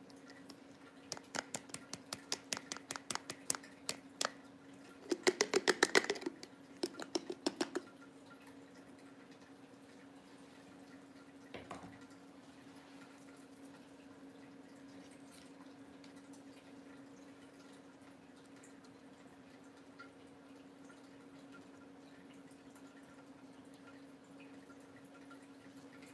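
Rapid clicking and rattling of small plastic craft items being handled, for about the first eight seconds, with a single click a few seconds later. A steady low hum runs underneath.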